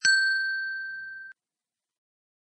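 A single bright bell ding from a notification-bell sound effect, a struck chime with a few clear ringing pitches. It fades for just over a second and then cuts off abruptly.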